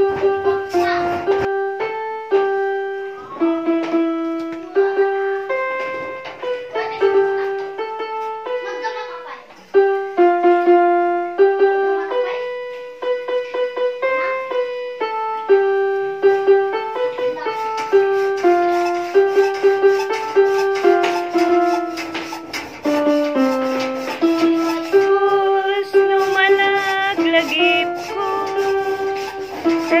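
Background music: a keyboard melody of single held notes stepping up and down, growing fuller from about halfway through.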